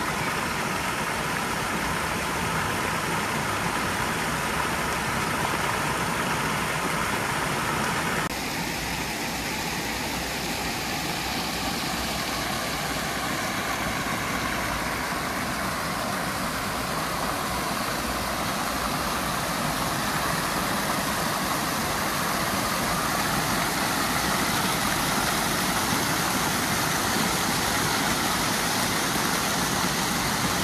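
Many fountain jets splashing into a pool: a steady rush of falling water, whose sound changes abruptly about eight seconds in.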